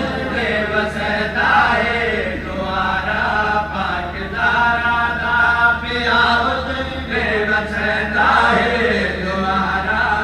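A man's voice in a sustained, melodic chant-like recitation, amplified through a microphone and loudspeakers, over a steady low hum.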